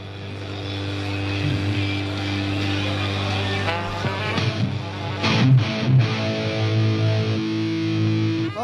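Amplified live band between songs: electric guitar and bass hold sustained notes over a steady haze of crowd noise, with a few low hits a little past halfway.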